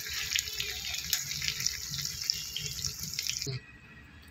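Stuffed bitter gourds (bharwa karela) sizzling and crackling in hot oil in a metal kadhai, being turned with a spatula. The sizzle cuts off suddenly about three and a half seconds in.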